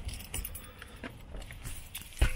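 Scattered light clicks and soft knocks of a person climbing into a car and handling things, with car keys jingling.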